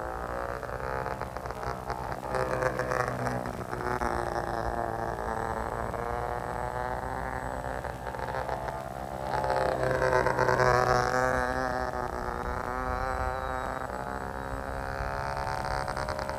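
Small electric motor and propeller of a foam RC biplane buzzing in flight, its pitch wavering up and down. It is loudest about ten seconds in.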